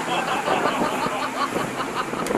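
Motorboats running at speed over choppy sea: a steady engine drone under loud wind and rushing, splashing water.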